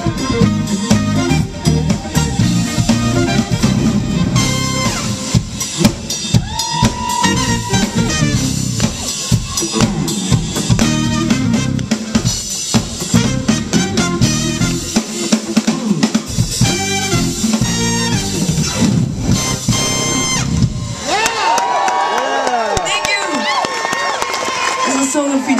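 Live funk-jazz band playing: alto saxophone and trumpet over electric guitars, bass and drum kit. Near the end the bass and drums drop out and the crowd cheers and whistles.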